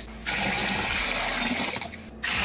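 Water poured from a container into the plastic wash tub of a mini portable washing machine, a steady splashing rush. It starts about a quarter-second in and cuts off sharply just before the end.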